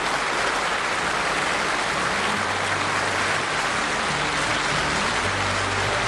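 Studio audience applause, a steady even clatter as the curtain opens. Soft low notes of the song's instrumental introduction start underneath about two seconds in.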